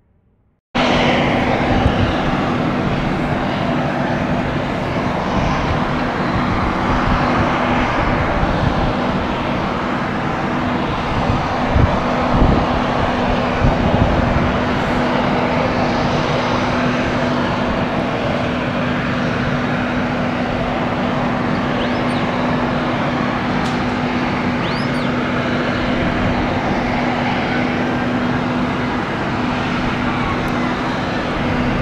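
Jet airliner engines, a steady loud rush with a constant low hum underneath, starting suddenly about a second in.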